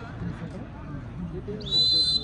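A referee's whistle blown once in a short, sharp high blast near the end, over low chatter of players and onlookers at the volleyball court.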